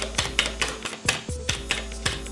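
Electronic track playing with its beat chopped into short, even slices: a fast, regular run of sharp percussive hits about five a second over a steady low bass tone, as the playhead is cued and beat-jumped in quick succession.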